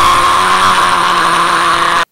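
A man's drawn-out shout held on one steady pitch, heavily distorted as if by an audio effect, cutting off abruptly at the end.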